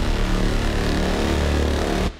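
Loud, dense intro theme music for a TV news bulletin, with a heavy deep bass rumble under held tones. It cuts off abruptly at the end.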